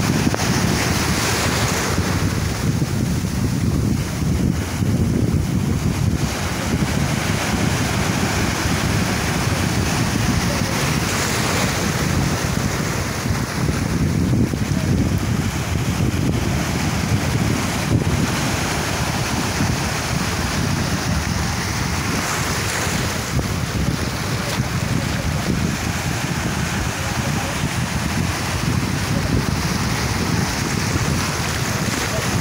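Wind blowing across the microphone: a steady, low, fluctuating rumble.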